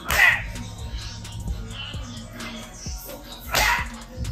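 Background music with a steady beat, cut by two short, loud cries, one just after the start and one near the end.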